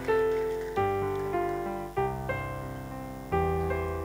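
Keyboard in a piano sound playing four slow, sustained chords, each struck and left to fade before the next.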